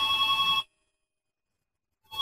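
A warbling, fluttering telephone-style ring that cuts off about half a second in, followed by a dead-silent pause between rings.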